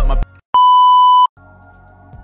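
A single steady electronic bleep, about three-quarters of a second long, dropped in right after the voice is cut off, the kind of edit bleep used to censor a word. Soft background music follows it.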